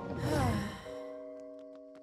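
A cartoon character's breathy sigh with a falling pitch. It is followed by a held soundtrack chord that slowly fades.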